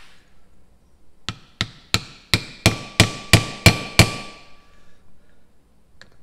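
Hammer striking a steel driver to seat a grease seal into a brake rotor's hub. Nine quick metallic strikes, about three a second and growing louder, each leaving a brief ringing note.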